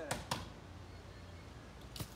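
Two brief light knocks close together near the start, then a quiet stretch with a faint click near the end; there is no sharp crack of a bat hitting the ball.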